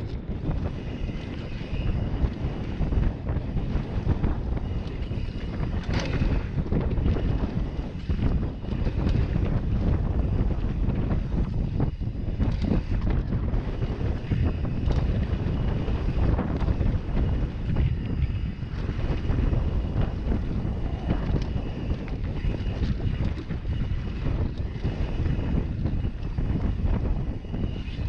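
Wind buffeting the microphone of a camera on a downhill mountain bike at speed, over a steady rumble of knobby tyres on a dirt trail. The bike rattles and knocks over bumps all through.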